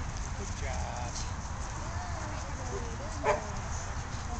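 Faint, distant voices of people talking over a steady low rumble. A single short, sharp sound a little past three seconds in stands out as the loudest moment.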